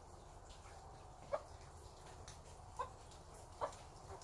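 A hen clucking: three short, faint clucks spread over the second half, over a steady low background hum.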